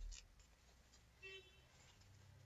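Near silence: room tone with a faint low bump right at the start and a little faint scratchy rustling.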